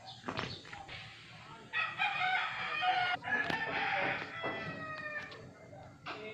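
A long bird call with a rich, layered tone, held for about three and a half seconds and falling in pitch near the end, with shorter calls just before it.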